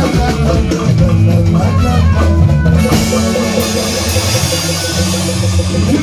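Highlife band music played live and loud through a PA system, with drum kit and guitar.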